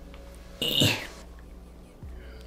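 A man's short straining grunt, falling in pitch, about half a second in, as he strains to twist a stuck cap off a small sample bottle.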